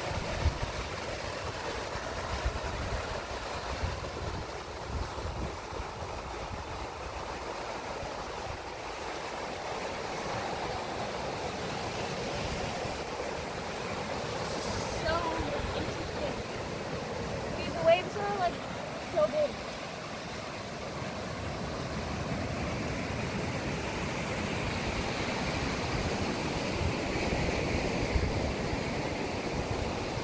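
Steady wash of ocean surf with wind noise on the microphone. A few brief voice sounds come through about halfway.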